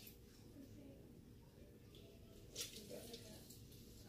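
Near silence: room tone, with one faint click a little over halfway through.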